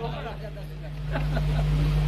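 A steady low hum runs under faint voices of people chatting in the background.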